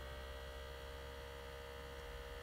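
Faint steady electrical hum, with thin constant tones and no other events.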